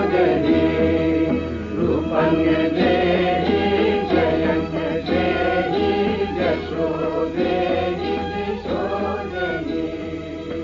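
Devotional music: voices singing or chanting in a sustained, melismatic line over instrumental accompaniment and a steady low drone, from an old radio recording with a narrow, dull top end.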